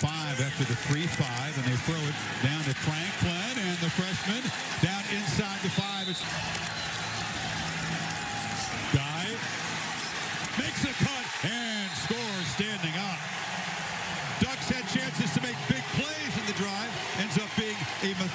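Television football broadcast: a commentator talking over a steady hiss of stadium crowd noise.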